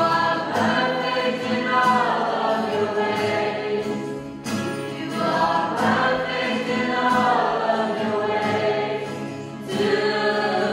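A mixed choir of young men and women singing a gospel song with acoustic guitar accompaniment, in two long phrases with a short breath about halfway through.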